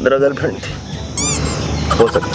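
One spoken word, then a short, quick warbling call like a bird's, rapidly sweeping up and down in pitch for about a third of a second, a little past one second in.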